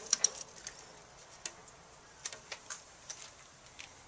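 Razor knife scraping old urethane glue off the edge of a window glass: a few sharp scrapes and clicks right at the start, then scattered light ticks.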